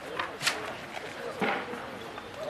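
Indistinct voices of people at an outdoor ceremony, with a sharp click about half a second in and a brief louder sound near the end.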